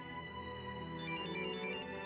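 Mobile phone ringing, a quick run of high electronic ringtone notes about halfway through, over soft sustained background music.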